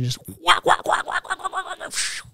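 A man imitating a helicopter engine with his voice: a quick pulsing rhythm, about six pulses a second, ending in a breathy hiss near the end.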